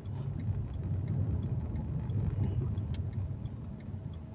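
Steady low rumble of a car's engine and tyres on a wet road, heard from inside the cabin, with one faint click about three seconds in.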